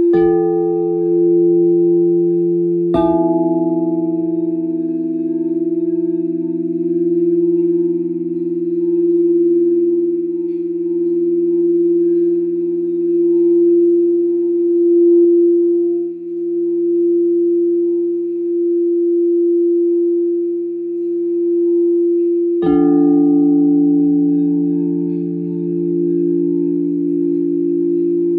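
Crystal singing bowls struck three times: at the start, about three seconds in, and again near the end. Each strike sets several steady tones ringing that overlap and carry on between strikes, slowly swelling and fading.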